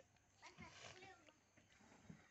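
Near silence, with only faint, indistinct background sound.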